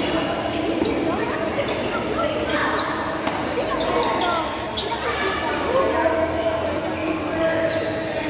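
Badminton rally: several sharp racket strikes on the shuttlecock, with sneakers squeaking on the court floor, in a large echoing hall with voices chattering in the background.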